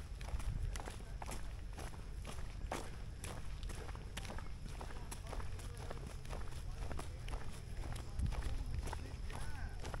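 Footsteps of people walking on a dirt path, about two steps a second, over a steady low rumble of wind on the microphone.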